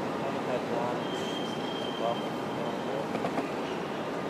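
Outdoor urban waterfront ambience: a steady wash of traffic and wind noise with snatches of distant voices, and a thin high squeal lasting about a second and a half around the middle.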